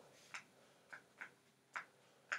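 Faint, regular ticking, about two sharp ticks a second, in a quiet room.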